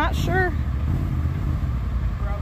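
Polaris RZR side-by-side's engine running at low revs as it climbs a steep, muddy rock section, with a short shout from a person near the start.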